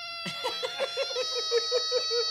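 Red quiz buzzer held down, giving one continuous electronic tone that is being left on to run its battery flat; its pitch dips slightly about a second in. Giggling laughter in quick pulses sounds over it.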